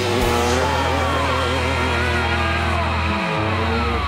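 Dirt bike engine running at high revs as the bike skims across a lake, its pitch wavering up and down. A steady low drone lies under it and drops away a little after three seconds in.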